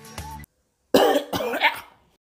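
Background music cuts off, and after a short pause a cartoon character coughs for about a second.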